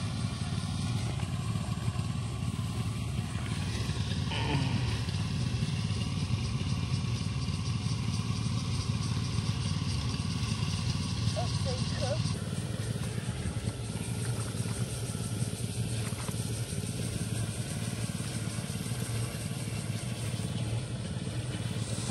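A small engine running steadily somewhere off in the distance, a continuous low drone at constant pitch.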